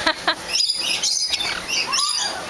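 Lorikeets and lories chattering in short, high chirps while feeding on apple held in a hand.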